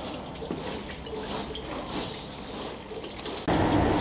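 Insulating oil dripping and trickling inside the tank of a 33 kV on-load tap changer as it is drained and flushed. About three and a half seconds in, this gives way abruptly to a louder, steady low hum.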